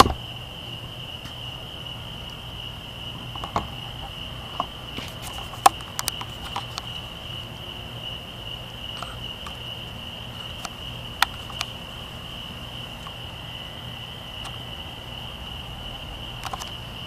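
Steady high-pitched chorus of crickets trilling without a break. A few short sharp clicks and taps are scattered through it, the loudest about six seconds in.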